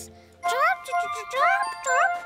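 A young cartoon voice gives three short rising cheeps, imitating baby birds, over soft tinkling music.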